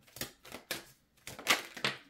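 A deck of tarot cards being shuffled by hand: the cards slap and snap against each other in a quick run of sharp clicks, the loudest about halfway through and again near the end.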